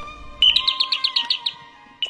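Electronic bird-tweet doorbell ringing: a rapid string of about nine high chirps lasting about a second, over soft background music.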